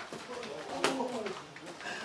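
A punch in boxing gloves landing on a blocking glove: one sharp slap about a second in, over a low voice.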